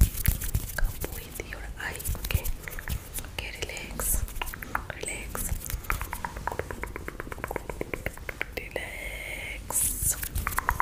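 Fast, close whispering into a foam-covered microphone, broken by many short clicks, with a quick run of rapid clicks in the middle.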